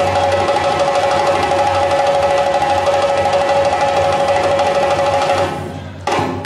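Djembe and other hand drums played in a fast, dense roll with a steady ringing tone over it, dying away just before the end.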